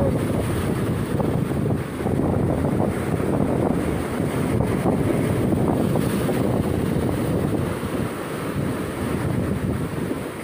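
Sea surf breaking and washing over coastal rocks, a steady rushing noise, with wind buffeting the microphone.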